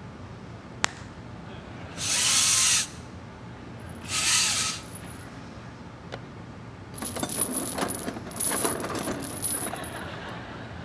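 Staged Foley sound effects for clothing and a leather clutch. A single sharp click comes about a second in. Two short loud rasping bursts follow, about two seconds apart. Then comes a long, irregular rattling zip that goes with a clutch's zipper being pulled open, likely made by pulling the cord of a set of venetian blinds.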